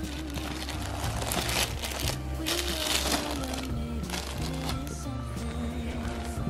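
Metallic foil gift wrap crinkling as a wrapped present is handled, the rustling loudest from about one to three and a half seconds in. Music plays in the background throughout.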